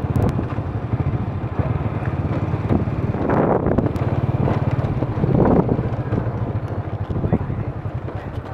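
A vehicle engine running steadily, heard from on board while riding, with wind buffeting the microphone.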